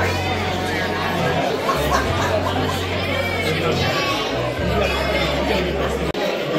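Many people talking at once at the tables, over background music with held low bass notes that change every second or so.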